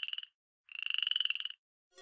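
A frog calling: two short, rapidly pulsed trills, the first ending a moment in and the second starting just under a second in.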